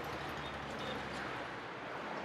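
Steady roadside street ambience: a low hum and even background noise of traffic passing on a nearby road.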